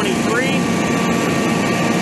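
Carrier-branded Generac home standby generator's 1.0-liter OHV engine running steadily.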